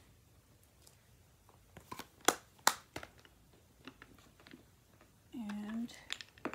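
Handling of a stamp set case and rubber stamp sheet: light rustling and a few small clicks, with two sharper clicks a little over two seconds in as a rubber stamp is pulled free and the case is handled.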